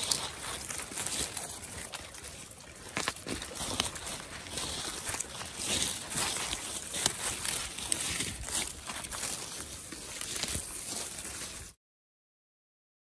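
Dry leaves and twigs rustling and crackling on a forest floor as a wristwatch on a cord is dragged through the leaf litter, with footsteps in the leaves; the sound cuts off suddenly just before the end.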